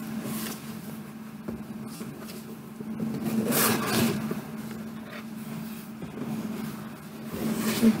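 Cardboard box being handled and its lid opened: rustling and scraping of cardboard, loudest about halfway through and again near the end, over a steady low hum.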